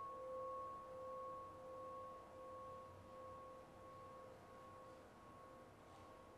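A bell-like ringing tone, with one higher overtone, dying away slowly and evenly.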